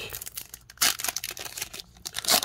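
Foil wrapper of a Tim Hortons hockey card pack crinkling and tearing as it is pulled open by hand, in a string of short, irregular crackles, the loudest a little under a second in.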